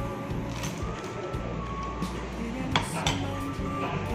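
Spoon and fork clinking against a ceramic plate while eating, with two sharper clinks about three seconds in, over background music.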